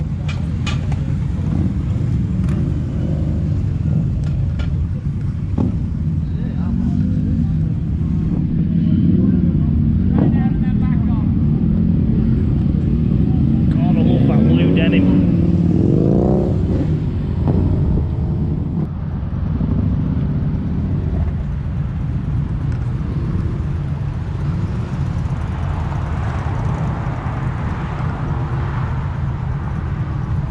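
Motorcycle engines running with a steady low rumble, under indistinct voices of people talking nearby.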